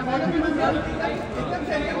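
Several voices talking over one another in a continuous babble of overlapping chatter, typical of photographers calling out to people posing at a photo call.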